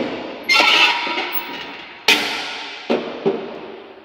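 Flush-mount aluminum gooseneck-hitch lid on an aluminum flatbed deck being lifted open and handled, making really loud ringing metal clangs. The two loudest come about half a second and two seconds in, each dying away slowly, with lighter knocks after them.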